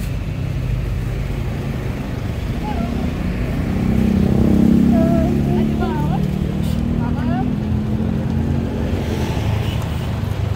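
Street ambience of a roadside market: a steady rumble of road traffic and vehicle engines, swelling in the middle, with scattered voices.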